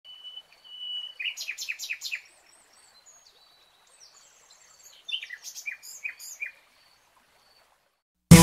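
Bird chirping, fairly faint: two quick runs of short, falling high chirps, about a second in and again about five seconds in.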